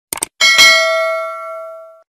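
Sound effect of a subscribe animation: a quick double click, then a bright bell ding a moment later that rings on with several clear pitches and fades over about a second and a half before cutting off.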